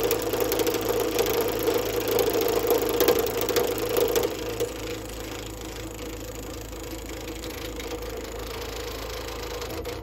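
Wood lathe running with the Sorby RS-3000 ornamental turning device's powered cutter working into spinning dry wood: a rapid rough ticking over a steady motor hum. About four seconds in the cutting noise drops away, leaving a quieter steady hum, and all of it stops abruptly at the very end as the lathe is switched off.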